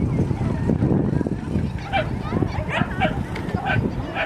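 A small dog yipping several times in quick succession during the second half while running an agility course, over a steady low background noise.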